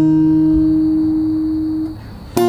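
A single steady musical note held for almost two seconds without wavering, fading out near the end.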